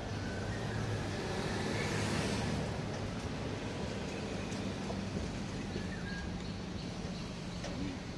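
Steady street traffic noise with a low engine hum; a vehicle passes about two seconds in.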